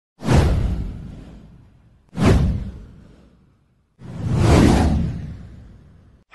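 Three deep whoosh sound effects for an animated news title card. The first two hit suddenly and fade over a second or two; the third swells up for about half a second before fading away.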